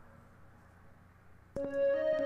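Quiet room tone for about a second and a half, then a synthesizer melody starts playing back in Ableton Live, with held notes carrying reverb and delay.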